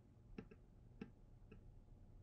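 Near silence with four faint clicks at a computer, the first two close together about half a second in, then one about a second in and one about a second and a half in.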